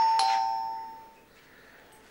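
Two-tone doorbell chime: a higher ding then a lower dong a moment later, both ringing out and fading away within about a second.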